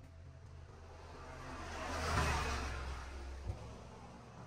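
A vehicle passing by. Its engine and tyre noise swell to a peak about two seconds in and then fade away. There is a short knock near the end.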